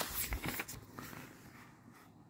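Faint clicks and rustling in the first second, then low room noise.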